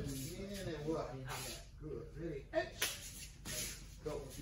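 Indistinct talking voices in a room, with a few short hissing sounds in between, the sharpest a little over halfway through.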